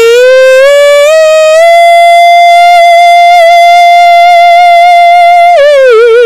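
A woman singing unaccompanied, holding one long, loud note that climbs in pitch over the first second and a half, stays steady for about four seconds, then falls away with a waver near the end.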